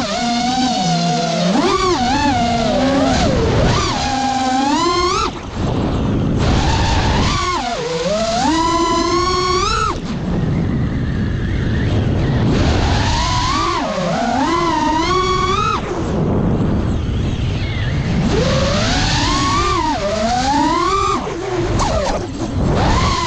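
FPV quadcopter's brushless motors and propellers whining, the pitch sweeping up and down with each throttle punch over a steady noisy rush. The whine drops out for a second or two several times as the throttle is chopped in dives and loops.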